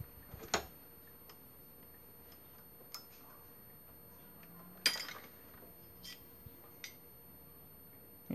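Faint, scattered metallic clicks and clinks of a screwdriver and wrench on a camshaft timing pulley as it is worked off the shaft, with one louder metal clatter about five seconds in.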